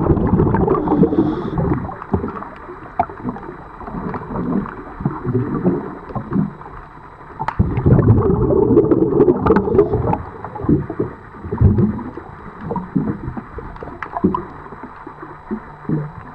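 Heard underwater, a scuba diver's exhaled air bubbling out of the regulator in loud rushing bursts, once at the start and again about halfway through, with scattered clicks and knocks in the quieter stretches between.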